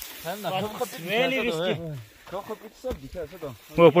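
People's voices: short stretches of talk and vocal sounds without clear words, with a brief breathy hiss about a second in.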